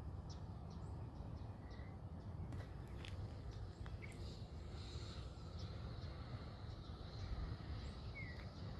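Faint outdoor ambience: a few short, scattered bird chirps over a steady low rumble.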